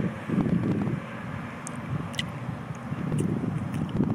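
Wind buffeting the microphone outdoors: an uneven low rumble, strongest in the first second, with a few faint clicks near the middle and later.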